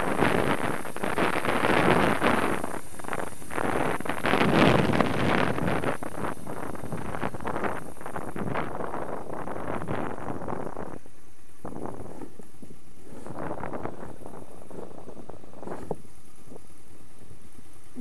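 Motorcycle riding with wind buffeting the helmet-mounted camera's microphone over the engine running. The rushing noise is strongest in the first six seconds and eases after about eleven seconds.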